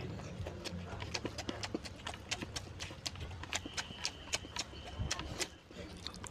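Chewing and lip-smacking while eating mutton curry with rice: rapid, irregular wet mouth clicks. A faint thin high tone sounds for about a second and a half in the middle.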